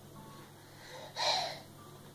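A toddler's single short, breathy breath sound, a little over a second in.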